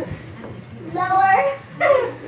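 A baby's short, high-pitched whining vocalization about a second in, followed by a brief squeak near the end.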